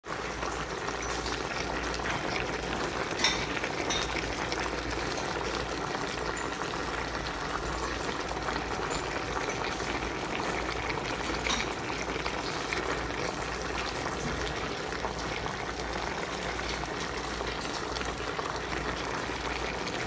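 A pot of beef pochero stew simmering, a steady bubbling with a couple of sharper pops.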